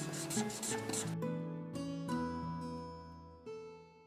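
Gentle background music of held, ringing notes. A marker scratches across paper during the first second while a stripe is coloured in.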